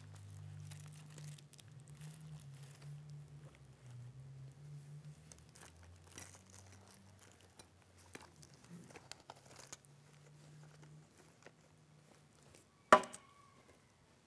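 Faint rustling and crinkling as things are searched through by hand, over a low hum. One sharp knock near the end rings briefly.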